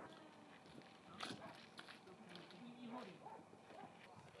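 Near silence: faint, indistinct voices and a few soft clicks or knocks.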